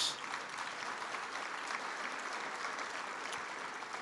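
Audience applauding steadily through a pause in a speech.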